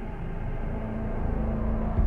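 Low rumble from the TV episode's soundtrack, growing louder, with a steady low hum joining about half a second in.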